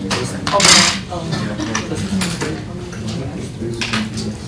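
Indistinct voices talking in the background, with a brief loud noise about half a second in and a couple of smaller clicks later.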